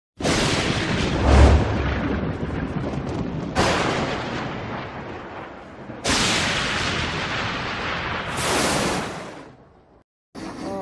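Cinematic intro sound effects: three heavy booming hits, each dying away slowly, with a very deep boom about a second in. A swelling rush of noise near the end then fades out.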